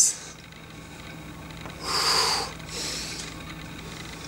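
A man's forceful breath out through the mouth, a hiss lasting under a second about halfway through, followed by a softer breath: breathing with the effort of pulling a resistance band down.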